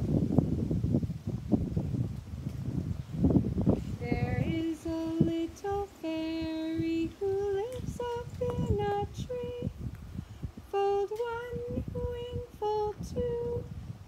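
A woman singing a slow melody unaccompanied, holding each note for about half a second to a second. The singing begins about four seconds in. Before it there is low rumbling noise.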